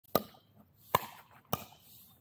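A plastic pickleball being hit back and forth in a warm-up rally: three sharp pops of paddle and ball, the second coming quicker after the first than the third does after the second.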